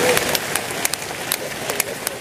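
Congregation clapping and applauding in scattered, irregular claps, with faint voices underneath.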